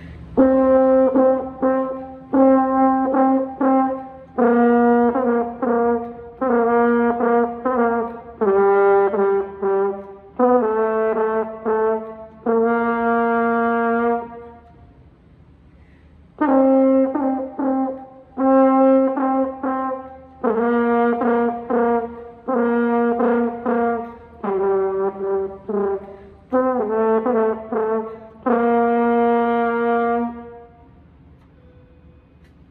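French horn played solo and unaccompanied: a run of separate notes in short phrases, the second and fourth ending on longer held notes. The passage stops for about two seconds halfway through, then is played through again.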